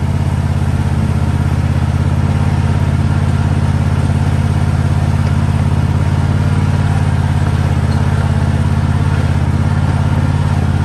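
Riding lawn mower's small engine running steadily and loudly at a constant speed.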